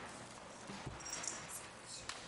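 Quiet meeting-room background with a few faint knocks and a brief rustle, the small handling noises of people waiting at their seats.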